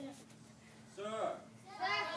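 A group of children's voices calling out together, briefly about a second in and again near the end, answering the instructor's question.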